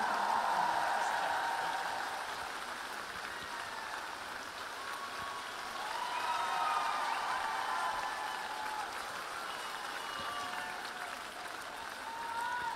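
Large arena crowd applauding, with a few faint voices calling out over the clapping. The applause eases after the first couple of seconds and swells a little again about six seconds in.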